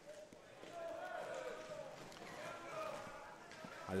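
Faint sounds of a roller hockey game in play: distant voices calling across the rink over a light clatter of skates and sticks.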